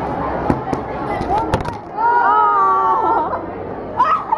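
A handheld compact camera is knocked about and dropped onto a plate of food. A few sharp knocks and handling clatter come on the microphone in the first second and a half, the last the loudest. Then a girl lets out a long high cry over the canteen chatter.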